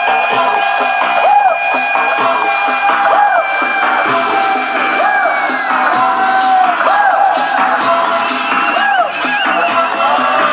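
Loud dance music from a DJ set, with long held synth notes and repeated swooping arcs of pitch over a steady pulse, and a crowd cheering underneath.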